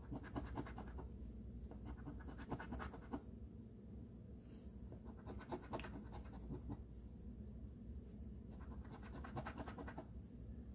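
A coin scratching the coating off a paper scratch-off lottery ticket, in four bursts of quick back-and-forth strokes with short pauses between.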